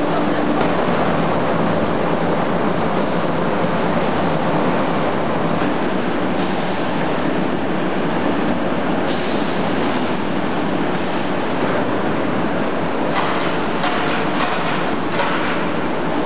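Loud, steady din of factory machinery running in a hide-processing hall, with a run of clicks and clattering in the last few seconds.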